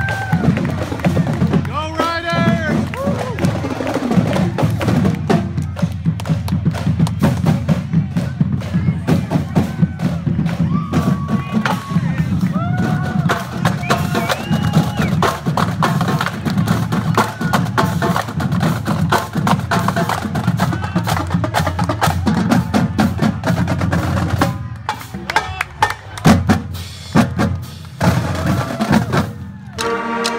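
High school marching band playing on parade: brass and saxophones over a drumline of snares, tenors and bass drums keeping a steady beat. Near the end the horns drop out and the drums carry on alone.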